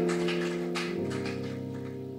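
A live jazz band playing its closing chords, with a few drum or cymbal hits in the first second. About a second in, the held chord changes to a final, lower chord, which rings on while the sound slowly fades.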